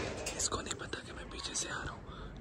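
A man whispering softly, breathy and hushed.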